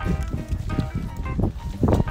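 Background music with held notes, over a run of uneven low thuds.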